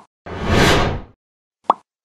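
Animated logo sound effects: a whoosh lasting nearly a second, then a short pop near the end.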